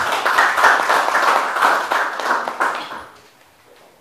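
Audience applauding for about three seconds, then the clapping dies away.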